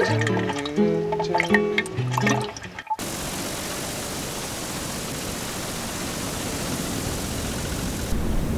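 Acoustic guitar music that cuts off suddenly about three seconds in, giving way to a steady rush of wind.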